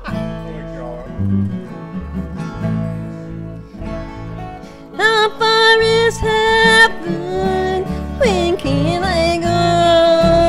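Acoustic string band playing an instrumental intro: guitars and mandolin strum the rhythm, and about halfway through a fiddle and an end-blown flute come in with the melody in long held notes, with a sliding note near the end.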